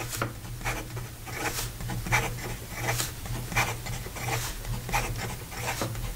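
Medium steel Bock nib of a Schon DSGN Pocket Six fountain pen writing fast on lined paper. Each stroke gives a short scratch, about two a second. The nib is well tuned for fast writing and keeps up without trouble.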